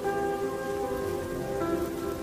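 Rain sound effect, an even patter, under soft sustained chords of a slowed, reverbed lofi track; new notes come in near the end as one song runs into the next.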